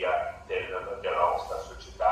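A man speaking over a video-call link: continuous talk with short breaks between phrases.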